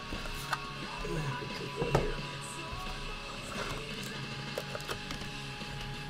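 Quiet background music playing steadily, with two light clicks of a plastic card sleeve and top loader being handled, about half a second and two seconds in.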